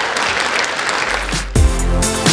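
Audience applauding, cut off about one and a half seconds in by electronic music with a deep bass and drum beats.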